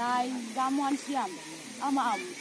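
People talking: voices speaking in short phrases.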